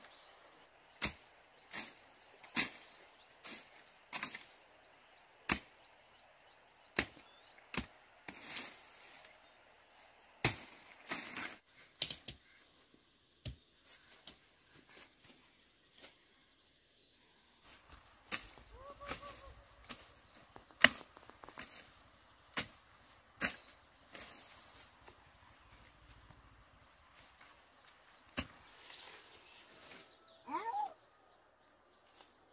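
Sharp chopping strokes on wood, about one a second, as from a blade cutting through woody stems, with a short lull midway and the loudest stroke about two-thirds through.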